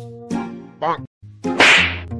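Light comedy background music with edited-in sound effects: a short snippet of canned laughter about a second in, then a loud swishing whip-crack effect near the end, the loudest sound.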